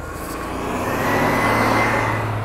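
City transit bus pulling away from the stop close by: engine noise swells over the first second and a half, with a faint rising whine on top.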